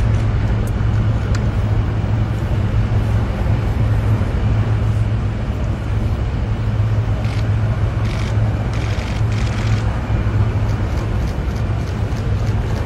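Loud, steady low mechanical rumble with a constant hum, like idling vehicle engines, with a few brief clicks about two-thirds of the way through.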